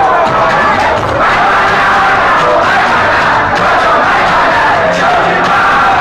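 Loud dance music playing with a crowd of voices shouting and singing along over it, continuous throughout.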